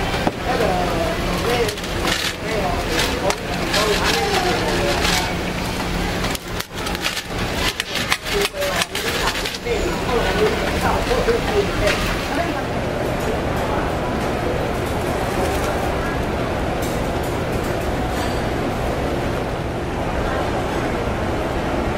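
Busy food-stall ambience: voices in the background over a steady low hum. A run of sharp crinkles and clicks falls in the middle, as paper bags are handled.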